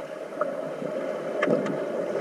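Underwater pool noise heard through a submerged camera: a steady muffled rush of water and bubbles from swimmers moving nearby, with a few sharp clicks, one about half a second in and a cluster around a second and a half in.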